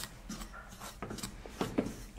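Spatula stirring and scraping dry rice flour as it roasts in a stainless steel pan: a soft, irregular scraping with a few light ticks.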